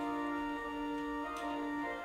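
Organ playing slow, sustained chords at the close of a church service.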